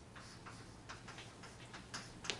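Chalk tapping and scraping on a blackboard as a word is written, a quick run of short, uneven clicks.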